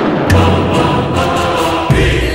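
Dramatic background score with choir-like voices over a low sustained drone, ending in a sharp hit just before the end.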